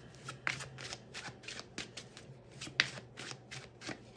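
Tarot deck being shuffled by hand: a quick, uneven run of soft card flicks and snaps.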